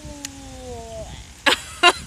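A long, drawn-out 'mmm' hum of enjoyment that falls slowly in pitch, followed by bursts of laughter starting about one and a half seconds in.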